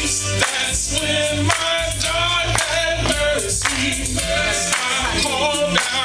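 Live gospel music: voices singing into microphones over a band with a steady beat and deep bass.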